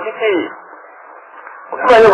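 A man's voice speaking, trailing off with a falling pitch about half a second in. A pause follows that holds only a steady background hiss, and then the voice resumes loudly near the end.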